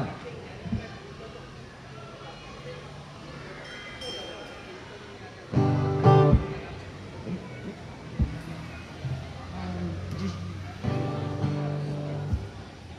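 Amplified acoustic guitar strummed twice while the players get ready to start a song: one loud chord about halfway, another near the end. A low steady hum and a couple of light knocks fill the gaps between.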